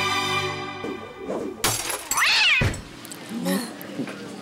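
Background music breaks off about a second in, followed by a sudden hit and a cartoon-style cat meow sound effect, its pitch rising then falling over about half a second.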